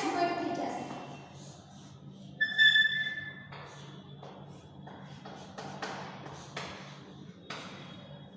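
Chalk on a blackboard as lines are drawn: a brief high squeak of the chalk about two and a half seconds in, the loudest sound, then several short scratching strokes.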